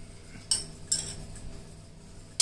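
A spoon stirring a thick, syrupy mixture in a steel pot, knocking against the pot with two sharp clinks about half a second apart, a little under a second in.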